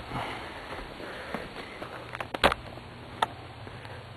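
Handling noise: a few faint clicks and knocks over a quiet background, the sharpest about two and a half seconds in and a smaller one less than a second later.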